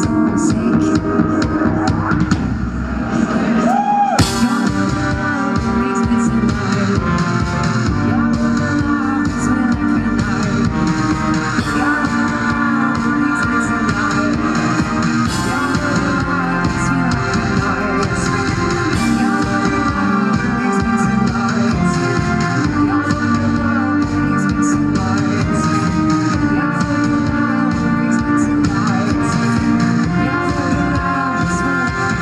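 Live band music played loud through a concert PA: drum kit, guitar and a woman singing. The bass thins out briefly, then a loud hit about four seconds in brings the full band back in.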